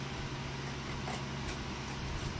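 A steady low hum of garage room noise, with a few faint light rustles of a cardboard template being handled.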